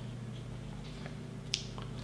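Quiet room tone with a low steady hum, broken by one short, sharp click about one and a half seconds in.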